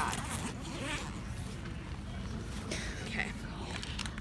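The zipper of an Osprey backpack being pulled open in a few separate rasping strokes.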